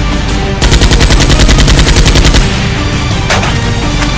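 Automatic gunfire: one rapid burst lasting about two seconds, roughly a dozen shots a second, then a single shot near the end, over background music.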